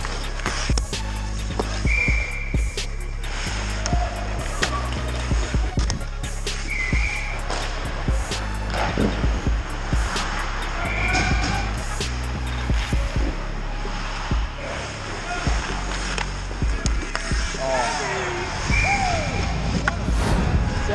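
Ice hockey play close to the net: skate blades scraping the ice and frequent sharp clacks of sticks and puck, with players' shouts near the end, over background music.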